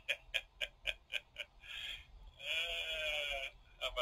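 A man laughing: a run of short chuckles, about four a second, then a longer drawn-out laugh with a slightly falling pitch.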